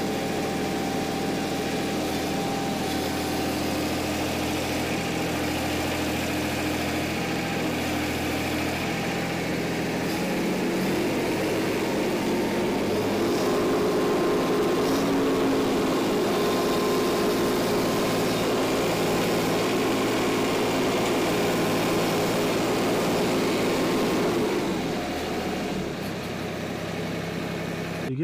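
Mahindra Max 26 XLT compact tractor's three-cylinder diesel engine running just after a start; about ten seconds in its note rises and grows louder, holds until about twenty-five seconds in, then drops back.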